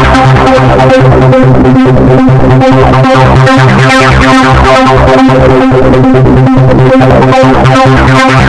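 Poizone V2 software synthesizer playing a chord through its arpeggiator in up/down mode: a steady, loud run of repeated synth notes, a little over two a second.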